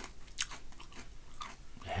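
Hard, crunchy lattice-cut potato chips (Tohato Koukou Grill Amijaga) being chewed in a series of crisp crunches, the loudest about half a second in. A short voiced "eh" comes at the very end.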